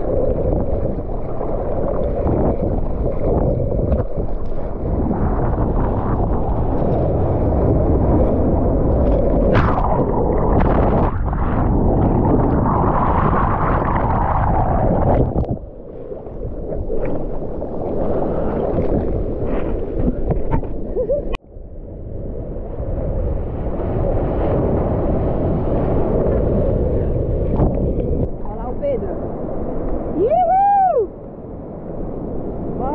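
Seawater sloshing and splashing around a camera at the surface of the sea as a bodyboard paddles and rides through breaking whitewater, loud and continuous with gurgling. The sound dips briefly a little past halfway and cuts out for an instant about two-thirds through.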